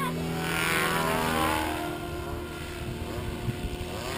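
Goblin 700 electric RC helicopter flying overhead: a steady drone of the main rotor and drive. From about half a second in, a brighter whooshing sound rises and its pitch spreads and shifts for a second or so as the helicopter manoeuvres.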